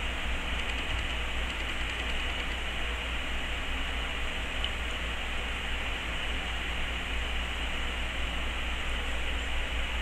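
Steady background hiss with a low hum underneath, even throughout, with no distinct events: the room and recording noise of a home video setup.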